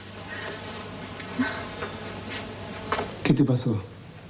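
A woman crying, with a loud burst of sobbing near the end.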